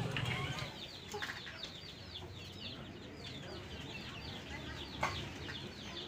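A small bird chirping, short high calls repeating about three or four times a second, faint over a crowd's murmur that drops away after the first second.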